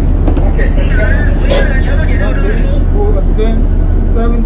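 Loud, steady rumble and rushing noise of a ship's engines and propeller wash churning the harbour water during unberthing, with wind on the microphone out on deck.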